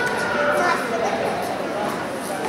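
Indistinct voices and chatter echoing in a large indoor sports hall, with a few faint sharp knocks.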